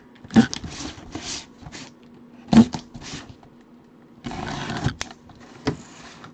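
Gloved hands handling and opening a cardboard box: a few sharp knocks of cardboard, then about a second of scraping and rustling near the end as the box is worked open.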